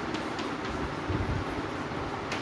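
Steady background rumble and hiss, with a few faint ticks of chalk on a chalkboard in the first half second and a low thump a little after the middle.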